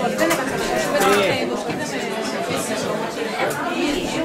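Many people talking at once in a large hall: audience chatter, with overlapping voices and no single speaker standing out.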